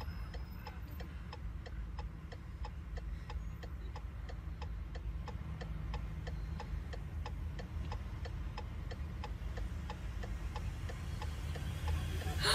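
Steady mechanical ticking, about two to three ticks a second, over a low rumble.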